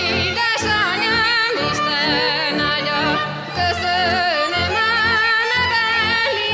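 A woman singing a Hungarian folk song in a wavering, ornamented melody, over band accompaniment with repeated low bass notes.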